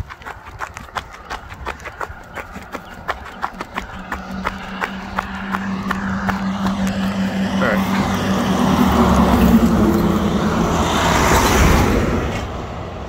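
Running footsteps on a road shoulder, about three or four a second, while a truck approaches along the highway: a steady engine hum and tyre noise grow louder and pass close by near the end.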